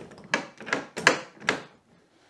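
A galvanised ring gate latch being worked by hand, giving about four sharp metal clicks as the ring handle is turned and the latch bar moves.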